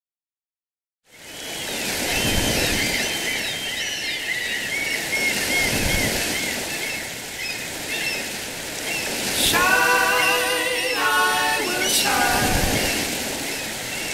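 Steady rushing-water ambience with many high chirps over it, starting after about a second of silence. About nine and a half seconds in, a held, wavering pitched tone with several overtones comes in for a couple of seconds.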